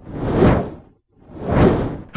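Two whoosh sound effects added in editing, each swelling up and dying away, about a second apart.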